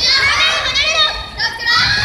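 Children's high voices shouting and calling out, several at once, with a short lull about a second and a half in.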